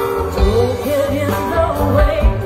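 A live band playing, with a woman singing lead into a microphone over drums and electric guitar.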